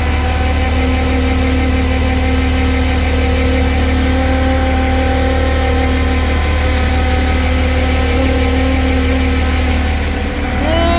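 Flatbed tow truck's engine running with the PTO engaged, driving the hydraulic winch that pulls a car up the tilted bed: a steady low hum with a steady higher whine, one tone of which drops out near the end.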